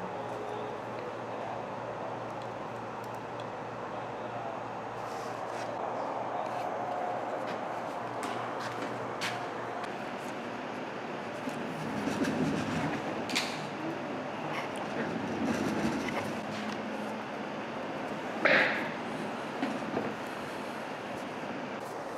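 Steady room noise with a low hum, broken by a few scattered sharp clicks and one louder short knock near the end.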